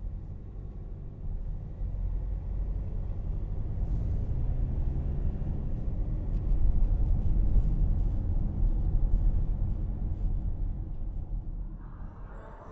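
Low rumble of a moving motor vehicle heard from inside it, growing louder about halfway through.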